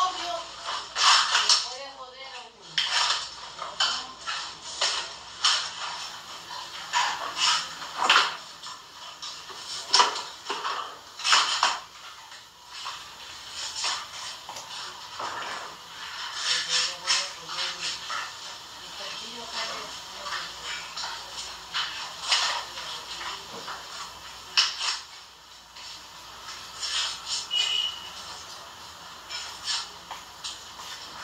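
Irregular clicks and knocks, clustered at times several a second, with faint voices in the background now and then.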